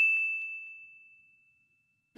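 A single bright ding, a chime sound effect for a '+1 Like' pop-up, struck just before and ringing on, fading away over about a second.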